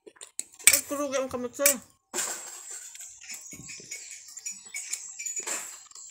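Close-up eating sounds: small clicks and scrapes on a plate as rice is scooped up by hand, with chewing, after a short spoken word about a second in.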